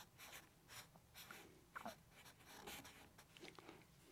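Felt-tip marker drawing on paper: faint, quick scratchy strokes one after another, with one short falling squeak a little before the middle.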